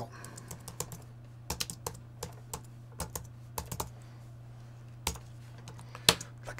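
Typing on a computer keyboard: a run of irregular keystrokes as a name is typed in capitals, ending with a single louder key press about five seconds in.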